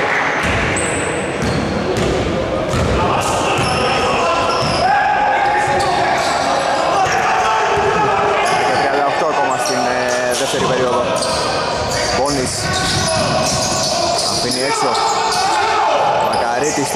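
A basketball dribbled and bouncing on a hardwood court during live play, with repeated short impacts. Players' voices call out over it, and the whole echoes in a large gym.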